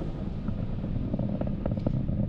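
Falcon 9 first stage's nine Merlin 1D engines at full thrust, heard at a distance as a steady low rumble with a faint crackle.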